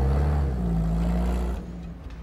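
A loud, steady low rumble with a haze of noise and a brief hum in the middle, fading away near the end.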